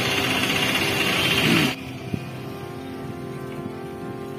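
Steady rushing wind and road noise from riding along a town road, over faint background music; the rushing cuts off abruptly a little under two seconds in, leaving only the quieter music.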